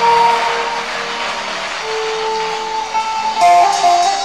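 Live church worship band music, led by an electric guitar playing long held notes, starting up as a worship song.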